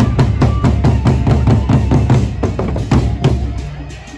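Gendang beleq ensemble: several large Sasak barrel drums beaten with a bare hand on one head and a stick on the other, playing a dense, fast rhythm of strikes.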